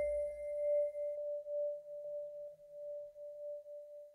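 Background music dying away: one long ringing tone, like a struck singing bowl, that wavers in loudness and fades out. A fainter higher tone drops out about a second in.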